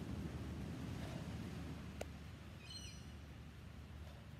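Quiet outdoor ambience with a low rumble that slowly fades. A single sharp click comes about halfway through, and a brief run of high bird chirps follows just after it.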